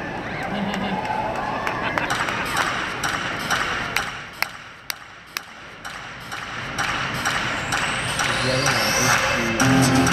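Arena crowd cheering and whistling for a figure skater, dying down to a hush with a few sharp ticks. About six seconds in, his program music starts over the arena speakers and builds, with a rising sweep near the end.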